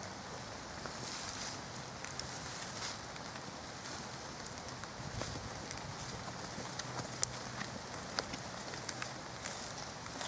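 Hands scraping and pulling loose soil, leaves and twigs out of a blocked badger sett entrance: a steady rustle of earth and debris with scattered small crackles and snaps, the sharpest about seven seconds in.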